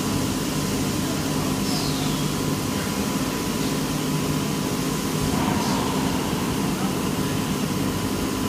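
EPS foam panel molding machine running steadily during its bead-filling stage: a continuous low hum under a rush of air-like noise, with a faint steady high whine.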